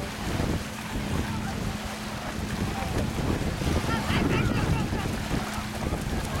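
Wind rumbling on the microphone over small waves lapping at a sandy shoreline, with a steady low hum underneath.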